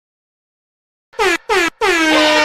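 After about a second of silence, three short horn blasts sound, each dropping in pitch. The third runs on into the start of a song.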